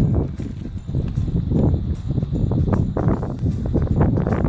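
Irregular footsteps crunching on gravel.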